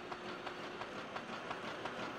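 Faint, steady mechanical clatter with rapid, fine clicking.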